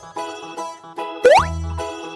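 Bouncy children's background music with plucked notes over a bass line. About a second in, a quick rising sound effect sweeps sharply upward and is the loudest sound.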